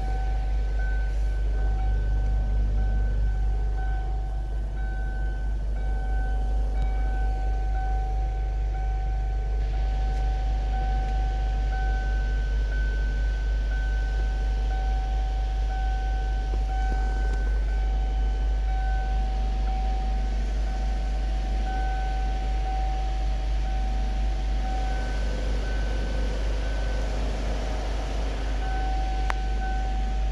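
A 2007 Kia Sportage engine idling in Park, heard from inside the cabin as a steady low rumble. A thin, high whine comes and goes over it.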